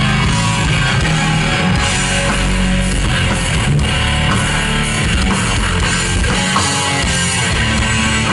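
Live doom metal band playing a loud, steady instrumental passage: electric guitars over bass and drums, with no vocals.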